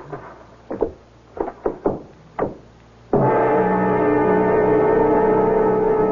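Short grunts and gasps of a scuffle between two men, then about three seconds in a loud dramatic music sting starts abruptly, a sustained chord held steady.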